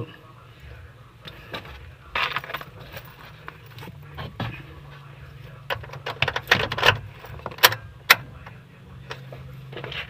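Car keys jangling, with a rattle and several sharp clicks as the ignition key is turned to the on position. A low steady hum runs underneath.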